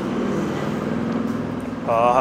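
A steady low droning hum, with a man's voice starting just at the end.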